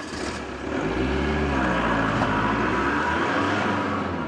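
A car engine running as the car pulls away and drives off, its pitch rising and dipping over a few seconds.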